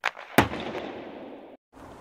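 A single gunshot: one sharp crack about half a second in, followed by a long echoing tail that cuts off suddenly.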